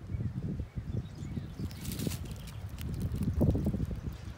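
Wind buffeting the microphone outdoors: an uneven low rumble that comes in gusts and grows louder toward the end, with a few faint crackles about halfway.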